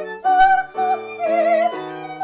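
A classical soprano singing a melody in short held notes with vibrato, with a violin playing alongside and piano accompaniment.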